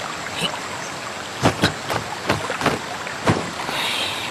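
Steady rush of a waterfall, with about five sharp snaps between about a second and a half in and near the end. The snaps fit the swish of cloth sleeves as the arms are whipped through kung fu form movements.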